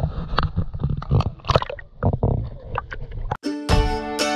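River water sloshing and splashing against a camera held at the waterline, with irregular knocks and gurgles. Near the end it cuts off abruptly and plucked-string background music begins.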